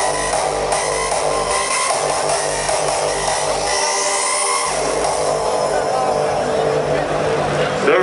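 Hardstyle music played loud over an arena's PA system: held synth tones with a voice mixed in, and a rising sweep about halfway through.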